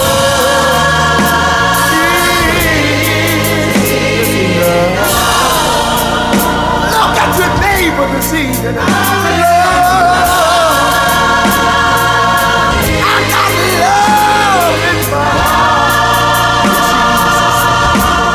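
Soul-gospel song: a backing choir sings long held chords over a steady band with bass and drums, and a solo voice slides through runs between the choir's phrases.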